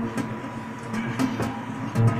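Quiet guitar accompaniment: a low sustained drone with a few short scratchy plucks or clicks.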